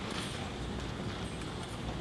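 Footsteps of several children in dress shoes and sandals clicking on a hardwood gym floor, an irregular patter of hard steps over a low murmur from the seated audience.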